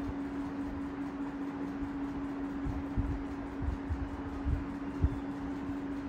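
A steady low hum holding one pitch, with soft low thumps scattered through it, the strongest about five seconds in.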